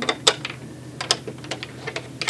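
Chess pieces clicking and knocking against a wooden wall demonstration board as they are lifted and set on its ledges: one sharp knock about a quarter second in, then a scatter of lighter clicks.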